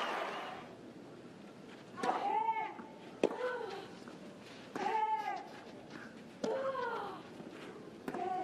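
Tennis players grunting as they hit during a rally: three short, arched cries that rise and fall in pitch, a second or two apart, with sharp clicks of ball on racket between them.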